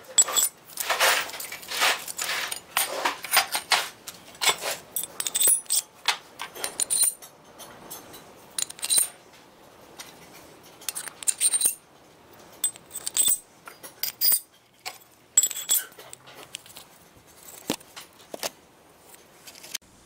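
Thin plasma-cut steel discs clinking and scraping against each other as they are picked up and slid one after another onto a square steel tube axle. The contacts come as irregular short metallic clinks, some with a brief ring, with short pauses between.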